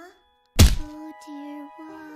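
The music cuts out, and about half a second in a single loud, short thunk of an impact is heard. The backing music then comes back with steady held notes.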